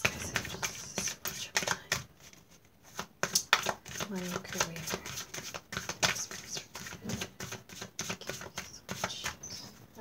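A deck of tarot cards being shuffled by hand: a run of quick, irregular card clicks and slaps, with a brief lull about two seconds in.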